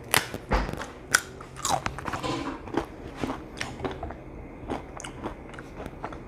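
Crisp fried corn tostada being bitten and chewed close to a clip-on microphone: a run of sharp, irregular crunches, the loudest in the first second or so.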